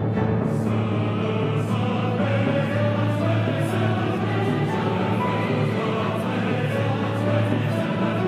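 Mixed choir singing with a chamber orchestra, over a low note held throughout that fits a timpani roll played with soft mallets.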